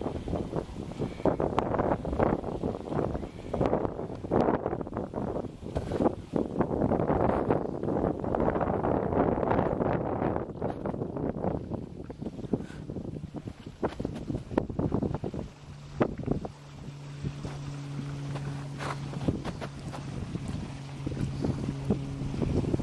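Wind buffeting the microphone in uneven gusts. About two-thirds of the way through, a steady low hum joins it.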